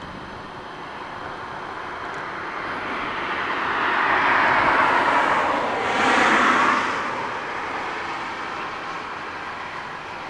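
A vehicle passing by: its noise swells, peaks sharply about six to seven seconds in, and fades away.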